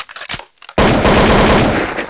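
A few scattered clicks, then, a little under a second in, a loud, dense burst of rapid crackling that runs on past the end.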